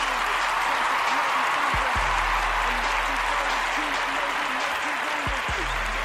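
Steady applause over a hip hop music bed, with deep bass hits about two seconds in and again near the end.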